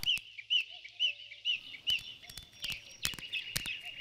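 Small birds chirping in short repeated high notes, about two or three a second, fainter in the second half, with scattered faint clicks: an ambient bird sound bed in an animation's soundtrack.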